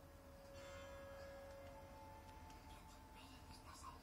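Near silence: faint room tone with a faint, distant voice and two faint held tones, the second starting about halfway through.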